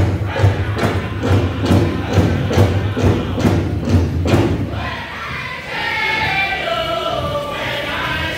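Powwow drum group beating a big drum steadily, a little over two strokes a second, with singing. The drumming stops about four and a half seconds in, and the singers carry on with a falling unaccompanied phrase as the song ends.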